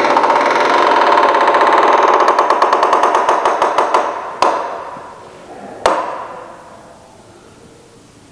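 A wooden door creaking loudly and at length on its hinges as it swings open, then fading away. Two sharp knocks follow, about four and a half and six seconds in.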